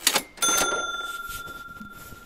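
Logo sound effect: a short whoosh, then a single bright bell-like ding about half a second in that rings on and fades away slowly.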